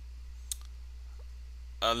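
A single short click about half a second in, over a low steady hum, with a brief spoken 'uh' near the end.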